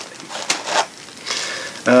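Thin plastic packaging crinkling and rustling in short, irregular scrunches as small bagged parts are handled.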